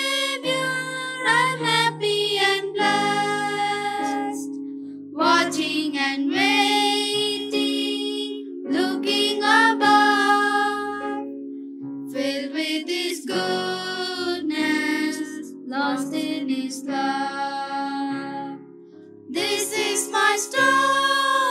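Three girls singing a worship song in unison into a microphone, in phrases with brief breaths between them, over steady held instrumental notes. The singing breaks off briefly near the end, then starts again.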